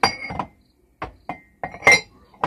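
Coffee mugs clinking against each other and the cupboard shelf as a hand moves them, about six sharp knocks with short rings, the loudest near the end.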